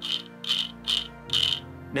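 3D-printed plastic counter wheel being turned on its start cap, giving four short plastic rasps about half a second apart as it rotates.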